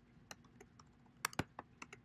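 Typing on a computer keyboard: a handful of faint, scattered keystrokes, with a quick cluster of louder ones about a second and a half in.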